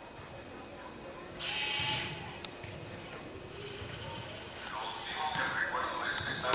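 Servo motors of a small humanoid robot whirring in a short, loud burst about a second and a half in, then a fainter, longer whir from past halfway.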